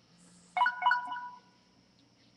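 A short electronic chime: two or three quick tones at a fixed pitch, starting about half a second in and dying away within a second, over a faint low hum.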